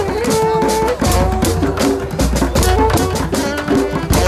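A one-man street percussion rig, a washboard, cymbal and metal and wooden blocks, struck fast with sticks over music with a bass line and short melody notes.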